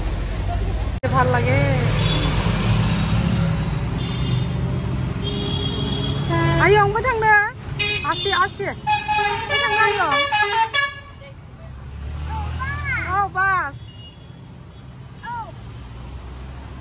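Street traffic noise and the low road rumble of a moving open electric rickshaw, with vehicle horns tooting. High-pitched voices talk from about six seconds in and again briefly near the end.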